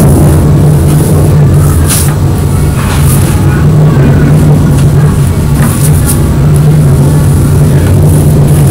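A loud, steady low hum that does not change, with a few faint short scratchy sounds over it.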